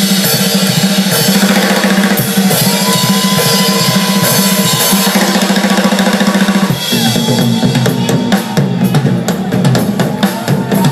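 Live blues band playing an instrumental passage: drum kit with bass drum and snare driving the beat over bass, keyboard and electric guitar. A long high note is held from a few seconds in until about seven seconds, then the drumming gets busier.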